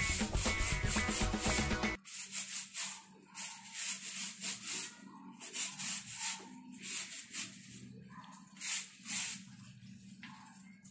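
Scrubbing strokes of a hand brush on a soapy bicycle tyre, a quick rhythmic rubbing at about two or three strokes a second. Music plays over the first two seconds and then cuts off suddenly.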